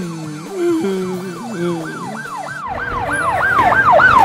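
Emergency-vehicle siren in a fast yelp, rising and falling about three times a second and growing louder, over background music that stops about two-thirds of the way through.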